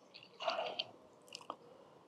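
Faint close handling noise: a soft rustle in the first second, then a single small click about one and a half seconds in.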